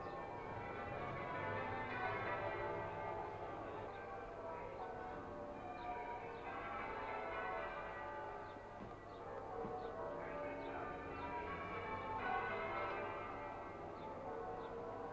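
Cathedral bells being change-rung, a peal of many bells falling in runs of notes that start over every few seconds.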